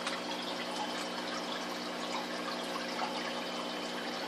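Small aquarium filter pouring its return water into the tank: a steady splashing trickle over a constant low hum.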